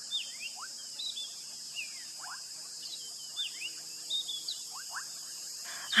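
Nature ambience: a steady, high-pitched insect buzz with short bird chirps scattered throughout.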